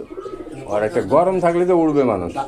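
Domestic pigeons cooing, with one long, wavering low coo in the second half.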